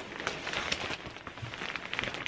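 Clear plastic bag crinkling and crackling as it is gripped and lifted, in a run of small irregular crackles.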